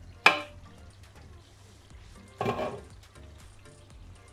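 Glass lid of a frying pan knocking on the pan as it is lifted off, with a second clatter a couple of seconds later, over soft background music.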